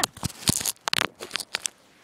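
A rapid, irregular scramble of crackles, scrapes and knocks in dry leaf litter and twigs, with the phone camera knocked about close to the ground during a tumble on a steep bank. It stops a little before the end.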